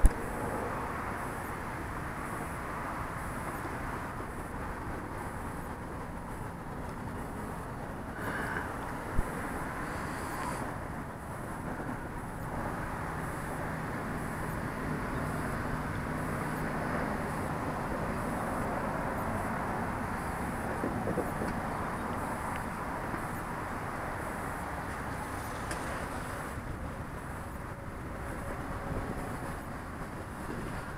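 Faint, distant drone of an electric RC biplane's propeller (BJ Craft Bi-Side 70, Hacker A50 motor turning an APC 17x10E prop) over a steady outdoor rumble, its low hum a little stronger about halfway through. A sharp tap right at the start and another about nine seconds in.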